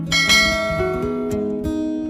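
Background music of strummed acoustic guitar, with a bright bell-like chime sound effect ringing out about a quarter of a second in.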